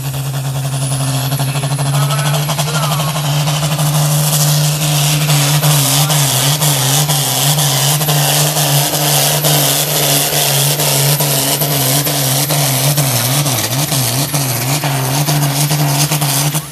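Diesel pulling tractor's engine running flat out under full load as it drags the weight sled down the track. It builds over the first few seconds, holds, then its pitch wavers up and down as the sled bears down.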